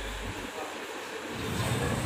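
Street traffic noise with wind rumbling on the microphone, a low rumble that grows louder toward the end.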